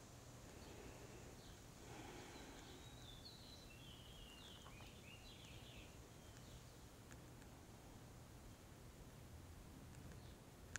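Faint bird chirps from outside, a quick run of short chirps in the middle, over near-silent room tone.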